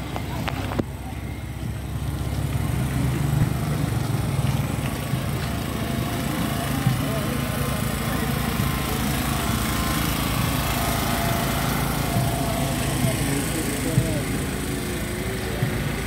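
A small engine running steadily, with the chatter of a walking crowd over it.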